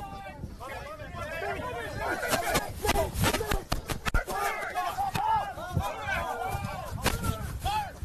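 Rugby players shouting to each other across the pitch, voices rising and falling throughout. Between about two and five seconds in comes a run of sharp thuds and knocks as a tackle goes in.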